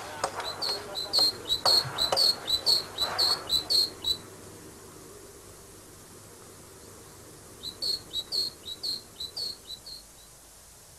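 A bird chirping: short, high, repeated chirps about two a second, in one run over the first four seconds and a second run near the end. Faint clicks and rustling sit underneath during the first run.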